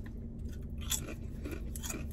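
Mouth sounds of chewing a bite of BLT sandwich, with a few short crunches about a second in and again near the end, over a low steady hum.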